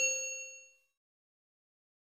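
A notification-bell chime sound effect, a single bright ding fading out within about half a second, then silence.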